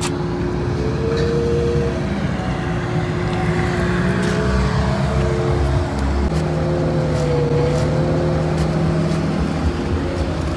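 A motor vehicle's engine running nearby: a steady low rumble with hum tones that hold, then shift in pitch about six seconds in.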